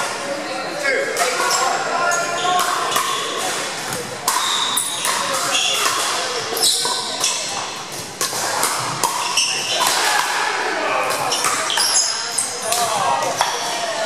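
Pickleball paddles hitting a plastic ball again and again at an irregular pace during rallies, in a large gym hall, over the chatter of players' voices.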